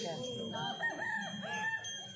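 A rooster crowing: one crow of four linked arched syllables, starting about half a second in and ending near the end, over faint voices and a thin steady whine from the sound system.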